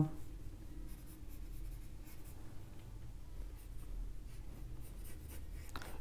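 Pencil drawing on paper: quiet, steady scratching of a pencil laying down the rough sketch lines of an eye.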